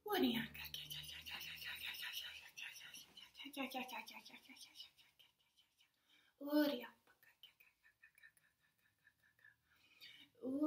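A woman's voice whispering and breathily vocalizing wordless light-language syllables. It opens with a voiced sound sliding down in pitch, and a short voiced syllable comes about six and a half seconds in, with fainter whispering after it.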